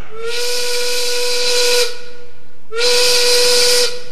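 Steam factory whistle sound effect, blown twice. Each blast lasts over a second, a steady tone over a loud hiss of steam, and the pitch slides up a little as each one starts. The whistle marks the hour, one o'clock.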